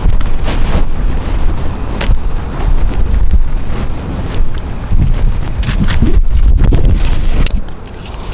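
Wind buffeting a handheld camera's microphone: a loud, uneven low rumble, broken by scattered sharp knocks and bumps from handling.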